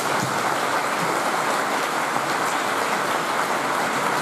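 Audience applauding, an even patter of many hands clapping.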